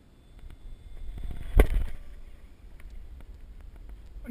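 HobbyKing Stinger 64 electric ducted-fan RC jet making a fast, close speed pass. Its rushing fan noise builds, peaks sharply about a second and a half in, then falls away, with wind rumble on the microphone.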